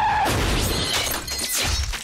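Head-on collision between a car and a van: a tyre screech cuts off about a quarter second in, giving way to crunching metal and shattering glass, with heavy low thuds near the end.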